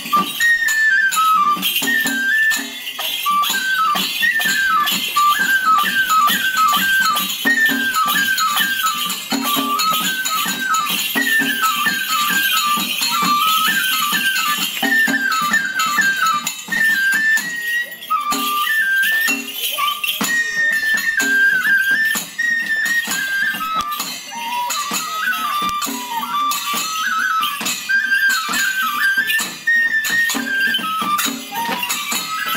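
Traditional kagura festival music: a Japanese bamboo transverse flute plays a high, ornamented melody in quick stepping notes over steady jangling percussion, with regular lower drum-like beats.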